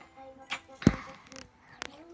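Three sharp knocks over soft background music. The loudest is a heavy bump just under a second in, with lighter clicks about half a second in and near the end.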